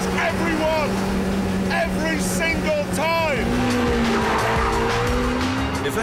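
Ariel Atom's supercharged Honda Civic Type R engine running hard at fairly steady revs while cornering, with the tyres squealing in repeated short rising-and-falling chirps.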